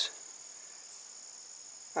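A steady, high-pitched chorus of insects trilling without a break, several tones layered together.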